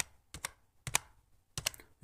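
Computer keyboard being typed on: several separate keystroke clicks at an uneven pace as a word is typed into a search box.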